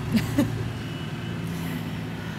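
A truck's engine running close by, a steady low hum loud enough to halt a speech.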